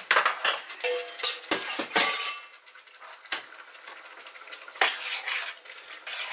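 Steel bowl and metal spoon clinking and knocking against a stainless steel saucepan as stock and water go into the browning pork: a busy clatter for the first two seconds or so, then quieter with a few single clinks.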